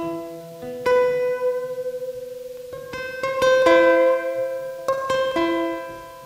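Small-bodied acoustic guitar fingerpicked: single notes and chords plucked at uneven intervals and left to ring, dying away near the end.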